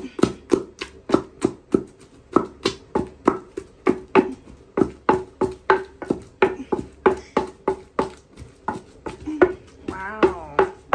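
Wooden pestle pounding boiled plantain in a wooden mortar to make onunu: steady, rhythmic thuds about three a second, each with a short hollow wooden knock.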